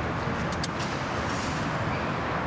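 Steady road traffic noise: a continuous rush of vehicles, without pauses or passing peaks.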